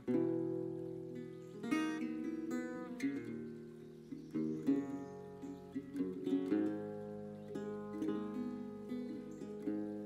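Metal-fronted resonator guitar playing an instrumental passage, a run of plucked notes that ring and fade, with a twangy, banjo-like tone.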